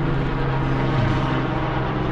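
Helicopter flying overhead, a steady low drone that drops slightly in pitch about a second in.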